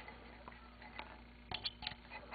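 Quiet room with a few faint clicks and taps as hands work the metal tablet mount, a short cluster of them near the end.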